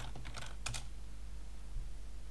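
Computer keyboard keystrokes: a quick run of about five or six clicks in the first second as the rest of a word is typed and Enter is pressed, over a low steady hum.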